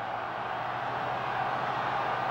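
Stadium crowd noise on an old match broadcast fading in and growing steadily louder, with a low steady hum underneath.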